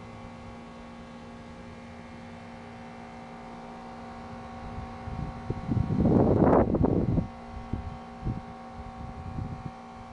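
Gusty wind buffeting the microphone ahead of an advancing dust storm: about five seconds in, a loud, rough rumbling gust lasts nearly two seconds, followed by smaller, irregular buffets. A steady low hum runs underneath throughout.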